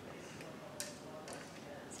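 A few faint clicks and taps from two pointer pens being handled together in the hands, over quiet room tone.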